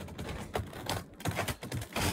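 Footsteps on a snowy deck: a quick, irregular run of light crunches and knocks.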